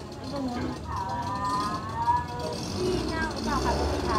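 Indistinct voices talking over a low, steady engine rumble that grows louder near the end.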